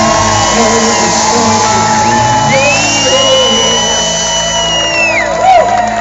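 Live rock band playing on a concert stage, loud and steady, with the crowd whooping and shouting over the music.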